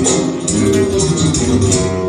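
Spanish guitar playing a sevillanas.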